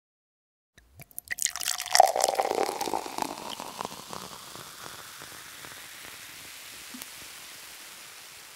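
Liquid pouring into a glass, starting about a second in with a dense patter of small splashes and clicks, then trailing off into a fading hiss.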